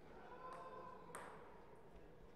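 Two light taps of a table tennis ball bouncing, about half a second apart; the second is sharper and rings briefly.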